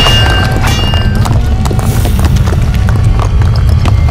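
Dramatic TV fight-scene score: loud music over a heavy low rumble, driven by fast, sharp percussion hits, with a high ringing tone through the first second.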